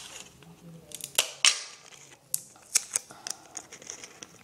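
Clear sticky tape being handled, torn and pressed onto a paper cube: a scattering of short crackles and sharp clicks.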